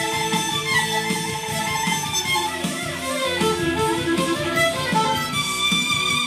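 Violin played with the bow, a continuous melody whose line dips lower in the middle of the phrase and climbs again.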